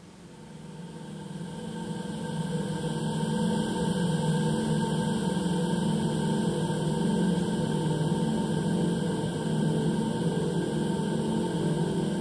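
Electronic ambient drone of layered sustained tones, weighted low, fading in over the first few seconds and then holding steady, as played over a documentary's closing credits.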